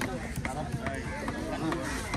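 People talking in the background, with a few short sharp knocks.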